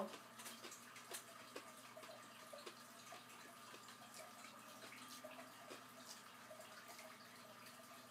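Near silence with faint, scattered wet clicks of someone chewing a soft dried fig with crunchy seeds, over a steady low room hum.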